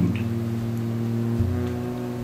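Guitar accompaniment letting notes ring out in a steady, sustained chord, with the low note changing about one and a half seconds in.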